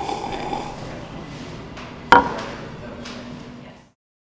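A single sharp knock with a brief ring about two seconds in, over faint background room noise that fades out near the end.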